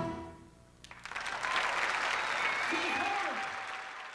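A big band's final chord rings and dies away, and after a short pause the audience breaks into applause, with a voice calling out among it; the applause fades toward the end.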